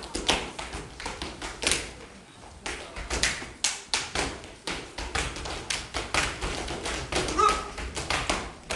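Percussive beat of sharp taps and thuds in quick, uneven succession over a low rumble, breaking off briefly about two seconds in.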